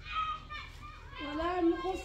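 A child's voice speaking in short phrases, with a brief pause in the middle.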